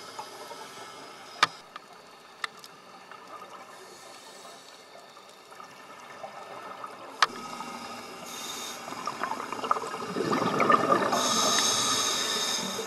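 Underwater recording of scuba divers: a low bubbling hiss with a few sharp clicks, then from about eight seconds in a rush of exhaled regulator bubbles that grows louder toward the end.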